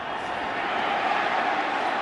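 Stadium crowd cheering in a steady roar that swells slightly, following a touchdown.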